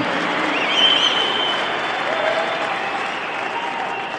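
A large congregation applauding in a big hall, with a few voices in the crowd rising above the clapping. The applause slowly dies away.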